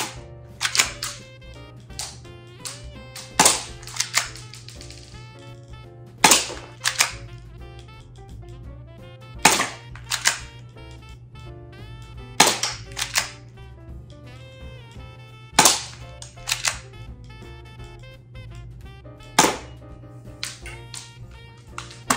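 Toy air rifle shooting about seven times, roughly every three seconds, each sharp shot followed within a second by one or two quieter clicks. Background music plays throughout.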